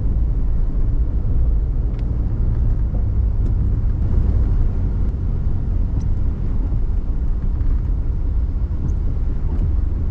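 Vehicle engine and tyres on a dirt road, a steady low rumble heard from inside the cab, with a few faint ticks.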